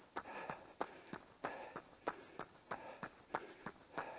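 Running footfalls on a tarmac road, a steady beat of about three steps a second.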